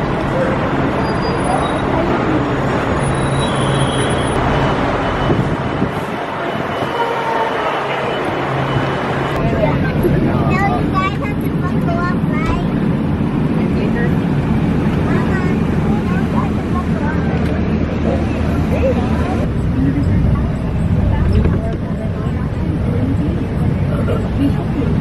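Coach and traffic noise: a running engine and steady road rumble, first at the curbside and then inside the moving bus, with people talking indistinctly in the middle of the stretch.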